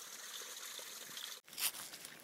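Water trickling faintly and steadily in a spring box, cut off abruptly about one and a half seconds in, followed by a brief crunch.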